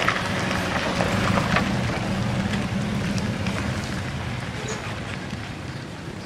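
Motor scooter engines running as they pass on a road, a low steady hum over general street noise, easing off toward the end.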